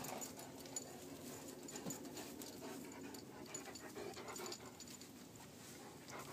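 A dog panting faintly, with light scuffling.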